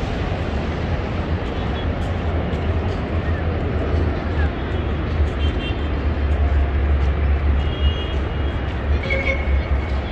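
City street ambience: a steady rumble of traffic with people's voices mixed in.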